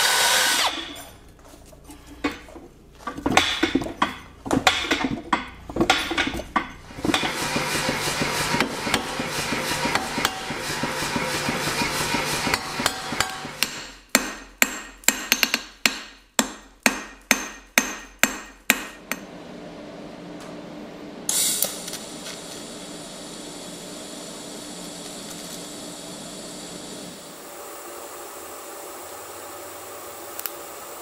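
A cordless drill boring into steel, starting and stopping and then running steadily, followed by a run of hammer blows on hot steel on an anvil, about two a second for some five seconds. After that comes a steady low hiss.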